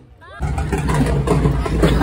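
Busy night-street noise starting suddenly about half a second in: vehicle traffic with a low rumble, mixed with people's voices.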